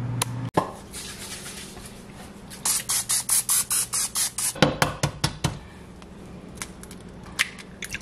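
An air fryer's fan hums and stops abruptly about half a second in. Then a quick run of short hissing bursts, followed by a few knocks as an egg is cracked into a ceramic non-stick frying pan.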